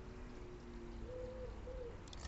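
A pigeon or dove cooing faintly: two soft, rounded notes about halfway through, over low steady background noise.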